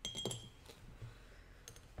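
Paintbrush clinking against a glass water jar while being rinsed: a quick cluster of light taps with a brief high ring at the start, then two fainter clicks later.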